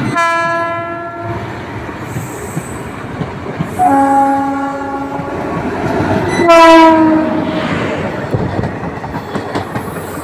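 Passenger trains hauled by Indian Railways electric locomotives run past, with the steady rumble and clatter of wheels on rail. Locomotive horns sound three times: once right at the start, once about four seconds in at a lower pitch, and loudest around six and a half seconds in as the locomotive goes by close.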